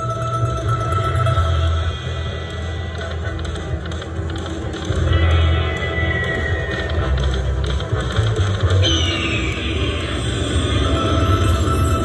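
Buffalo Diamond video slot machine playing its free-games bonus music: a steady electronic tune with a heavy bass that swells and fades, with chiming win sounds and a short falling chime about nine seconds in.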